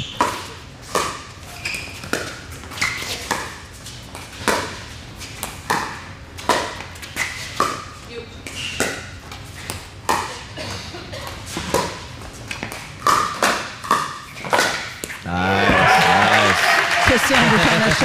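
A long pickleball rally: paddles striking the hollow plastic ball in an uneven run of sharp pops, one every half second to a second, for about fifteen seconds. The crowd then breaks into applause and cheering as the point ends.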